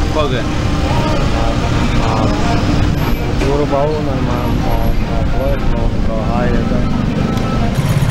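A man's voice speaking over steady street traffic rumble.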